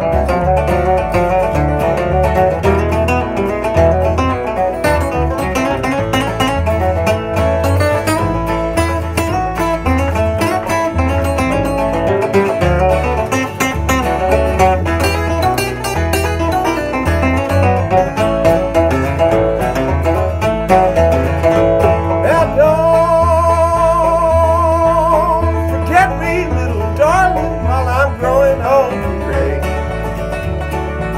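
Instrumental bluegrass break: two acoustic guitars, a five-string banjo and a bass guitar playing together at a steady tempo. About three quarters of the way through, a held, wavering note stands out above the picking.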